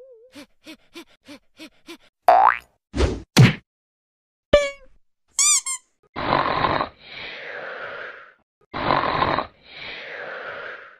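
A string of cartoon comedy sound effects. First come light ticks about four a second, then a quick rising whistle, two thuds, a click and a boing that falls in pitch. Near the end there are two pairs of raspy rushes, each a loud one followed by a softer, longer one.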